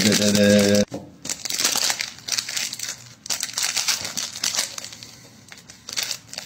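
Plastic fortune-cookie wrapper crinkling in uneven bursts as it is worked open by hand, with a brief pause about three seconds in.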